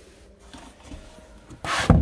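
Lift-up boot floor panel of a hatchback being lowered back over the spare-wheel well: faint rubbing and handling, then one loud thud near the end as the panel drops into place.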